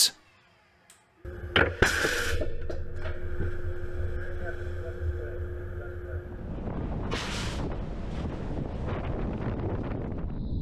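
Ship's deck-mounted torpedo tube firing: a few sharp clunks about a second in and a short hiss of air over a steady machinery hum. After that comes wind and the rush of the sea along the hull, with another brief hiss about seven seconds in.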